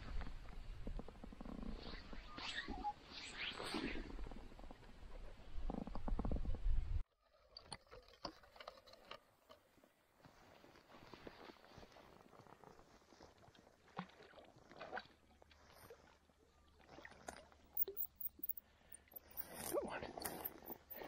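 Low rumbling wind and handling noise on a body-worn camera microphone, with a few brief higher rustles. It cuts off abruptly about seven seconds in, leaving quiet creekside ambience with faint scattered ticks.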